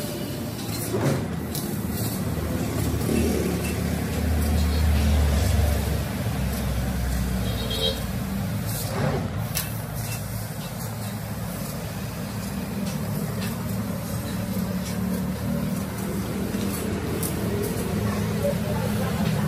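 CNC metal-cutting machine cutting a pattern through steel plate: steady mechanical running noise, with a deeper rumble between about four and seven seconds in and a few sharp clicks.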